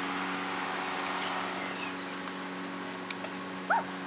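Steady background hiss with a faint low hum. Near the end comes one short, rising dog whimper.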